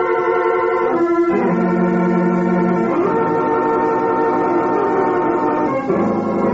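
Organ music bridge of held chords that change about a second in, again at about three seconds, and near the end, marking a scene change in the radio drama.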